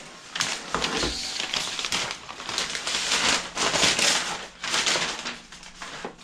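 Packaging being handled and pulled off a hydrofoil mast: irregular rustling and crinkling, with a few sharper crackles.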